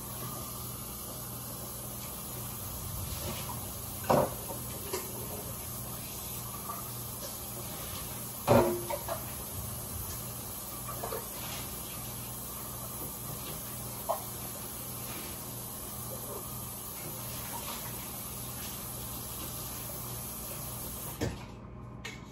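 A few scattered knocks and clicks of kitchen items being handled, the loudest about eight and a half seconds in, over a steady hum and hiss that cuts off shortly before the end.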